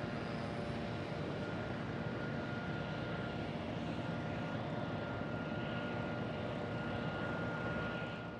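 Radial engine of a P-47D Thunderbolt (Pratt & Whitney R-2800) and the V12 of a P-51 Mustang running at low taxi power together, a steady propeller-plane drone with a faint high whine over it.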